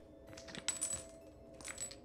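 Shards of a broken wine glass clinking lightly: a few small tinkling clicks about half a second in and again near the end.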